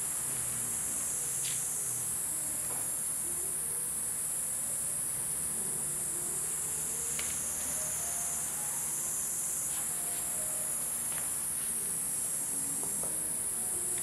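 Steady, high-pitched drone of insects that swells and eases slowly, with a few faint clicks.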